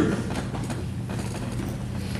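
A pause in speech: a steady low hum with a few faint scattered clicks.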